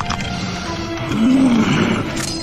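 A snow leopard character's low growl that rises and falls, about a second in, over tense film music.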